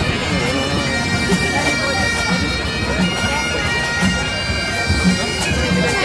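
Bagpipes playing, their drones held steady under the melody, with a low beat about once a second beneath them; crowd voices murmur in the background.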